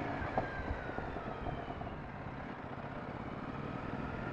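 2007 Triumph America's 865 cc air-cooled parallel-twin engine running at low road speed, heard from the rider's helmet. Its note slides down a little in the first two seconds, then holds steady.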